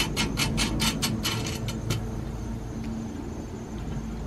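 Nut being tightened onto a ladder-mounting bolt behind a bus bumper with a ratchet wrench: quick, even clicking, about five clicks a second, that stops about two seconds in.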